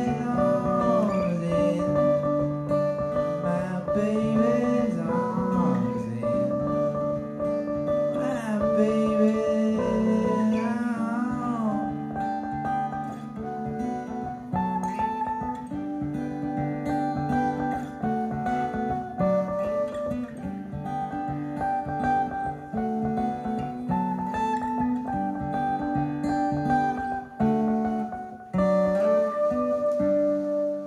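A live band playing an instrumental passage led by acoustic guitar, with a second guitar alongside. The playing thins briefly near the end.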